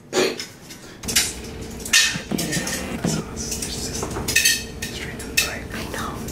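Metal kitchen tongs clinking against a metal baking tray and oven rack: a string of sharp, irregular clinks, some ringing briefly.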